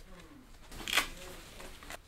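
Handling noise from a leather bag being rummaged through by hand, with one short, sharp rustle about a second in.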